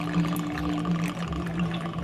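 Gin being poured from a glass bottle into a tall glass holding a lime wedge.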